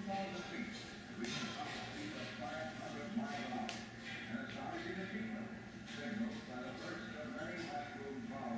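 Indistinct background speech with some faint music over a steady low hum; no words are clear.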